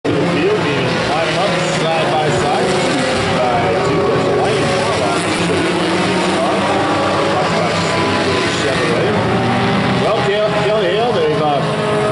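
Several race car engines running as the cars circle an oval track, their pitch rising and falling as they pass and throttle through the turns.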